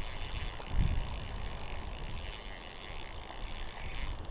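Spinning reel's gears and drag ratcheting as line is worked against a hooked fish on a bent rod, with wind rumbling on the microphone.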